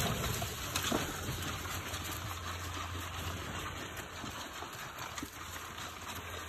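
A litter of Labrador puppies scrambling over wood shavings and eating dry food together from a trough: a steady rustling, crunching noise with occasional small clicks.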